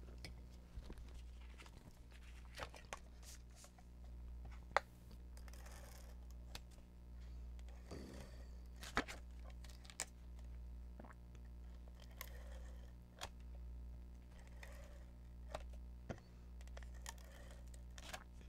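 An adhesive tape runner laying strips of tape on cardstock, with paper pieces handled on the desk: scattered light clicks and taps and a few short rasping strokes, faint over a steady low hum.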